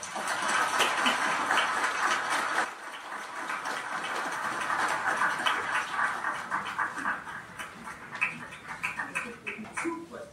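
A distant, reverberant voice from the audience asking a question, too far from the microphone to make out; it is loudest in the first few seconds.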